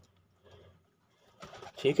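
Mostly quiet pigeon loft with faint pigeon cooing, then a man's short word near the end.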